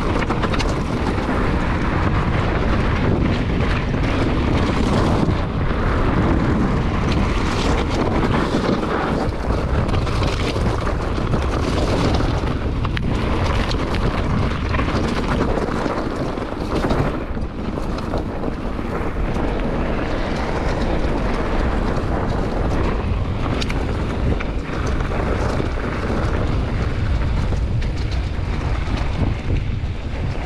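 Wind buffeting an action camera's microphone as a mountain bike runs fast downhill, with tyres rolling over loose dirt and gravel and frequent knocks and rattles from the bike over bumps.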